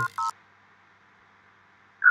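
Two short two-tone electronic beeps, a moment apart, then near silence.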